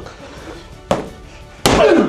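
Two punches from a smart boxing glove hitting a handheld strike shield: a lighter one just under a second in, then a much harder one near the end. Right after the harder hit, a man calls out with a falling pitch.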